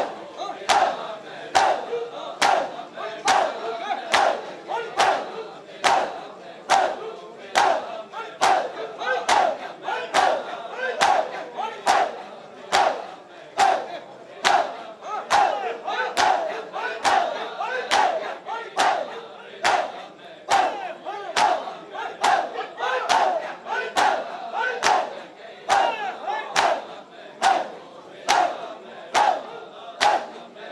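A crowd of men doing matam, beating their bare chests with open palms in unison: loud, sharp slaps at a steady beat of about three every two seconds, with massed men's voices shouting between the strikes.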